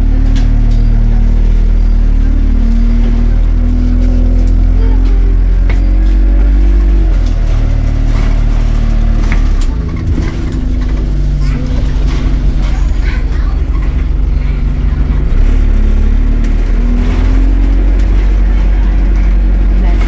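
Engine of a single-deck London bus heard from inside the passenger saloon, running under way; its pitch drops about seven seconds in and climbs again after about fifteen seconds as the bus changes speed.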